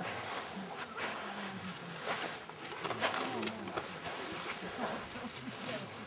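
Quiet, indistinct chatter of a few people talking softly, over a steady background hiss.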